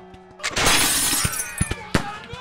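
A loud crashing burst of battle sound effects about half a second in, then several sharp cracks like shots, over steady background music.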